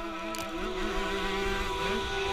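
Onboard sound of a two-stroke 125cc motocross bike engine running under load while climbing a hill, its pitch wavering slightly with the throttle.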